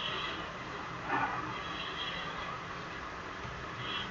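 Steady background hiss of a quiet room and microphone, with one brief faint sound about a second in.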